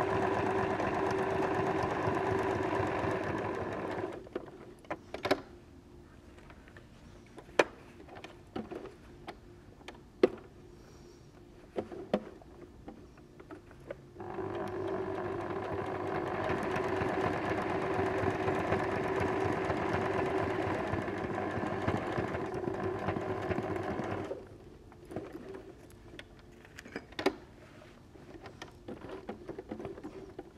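Electric domestic sewing machine running a zigzag stitch in two runs: one for about four seconds at the start, and one for about ten seconds from the middle. Between and after the runs it is quiet apart from scattered light clicks and taps.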